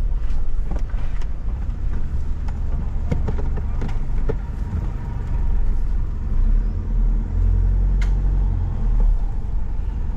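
Toyota Prado's engine running at low speed, heard from inside the cabin as a steady low rumble that swells for a few seconds in the second half while the vehicle manoeuvres.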